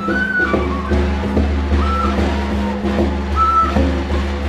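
Andean folk music played live: a small wooden vertical flute sounding short high notes over caja frame drums beaten with sticks in a steady beat, with a thick layer of other sound beneath.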